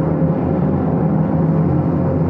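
A loud, steady low rumble from the soundtrack, like a sustained timpani roll, with a few held low tones underneath.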